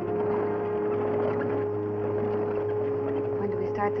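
Steady rumbling ride noise of a covered wagon on the move, with one low tone held steady over it. A man's voice starts in near the end.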